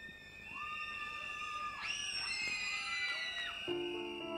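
High-pitched screams and cheers from the audience, sliding in pitch, strongest in the middle. Near the end, soft electric-piano chords begin the song's intro.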